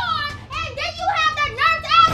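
A very high-pitched voice yelling excitedly in quick syllables that swoop up and down in pitch.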